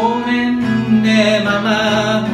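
A man singing over a strummed acoustic guitar, his voice holding a long wavering note in the second half.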